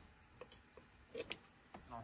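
Faint, steady, high-pitched trilling of insects in the background, with a few small clicks about halfway through.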